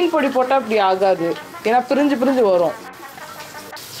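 Oil frying in a kadai on a gas stove: a steady sizzle under talking. It is heard on its own near the end, when the talking stops.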